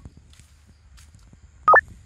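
A short, loud two-note electronic blip stepping up in pitch near the end, like a sound effect edited in with an on-screen caption. Underneath, a low outdoor rumble with faint light ticks of steps.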